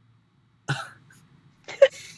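A person coughs once, sharply, about two-thirds of a second in. A second, shorter voiced cough comes near the end.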